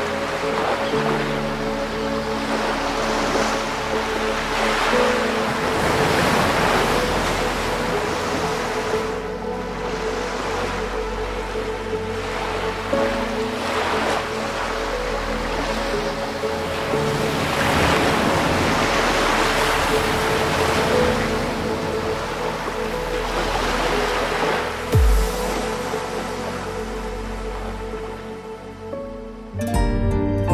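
Sea waves breaking and washing in, swelling and falling back every few seconds, over soft music with long held notes. Near the end a single low boom.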